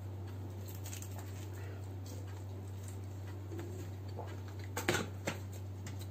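Close-miked chewing of a mouthful of cheese pizza: soft wet mouth clicks, with a sharper click about five seconds in, over a steady low electrical hum.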